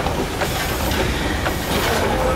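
Railway carriages rolling past close by: a steady rumble of wheels on track, with a few sharp clacks as the wheels cross rail joints.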